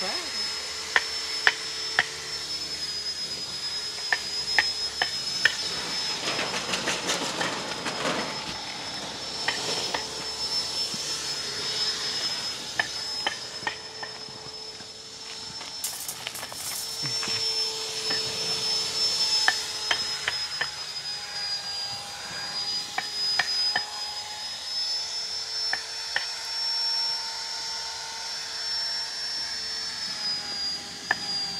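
Sharp, irregular clicks of hand tools cutting on a bonsai's wooden trunk while it is trimmed to shape, over a steady high whine.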